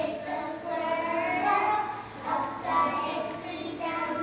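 A group of young children singing together on stage, with held, wavering notes.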